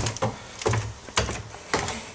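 Footsteps of a person walking, about two steps a second.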